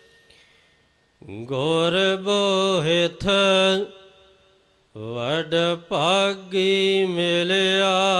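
Gurbani shabad kirtan: a voice singing long, wavering held notes with slides between pitches. The singing starts after a near-silent pause of about a second, breaks off again for about a second around the middle, then goes on.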